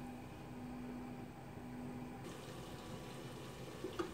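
Potato slices with a little sprinkled water cooking in a covered frying pan: a faint, steady sizzle and bubbling under the steel lid. A light click near the end as the lid's knob is gripped.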